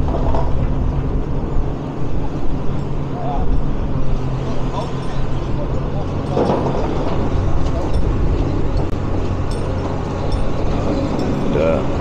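Komatsu tracked excavator's diesel engine running steadily at a demolition site, a constant low hum with street noise around it.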